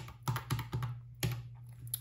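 Plastic keys of a desktop calculator being pressed, about half a dozen sharp clicks at an uneven pace.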